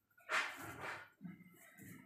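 A dog barking twice in quick succession, about half a second apart.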